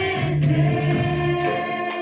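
A group of women singing a Christian devotional hymn together, with a beat of sharp percussive strokes about twice a second.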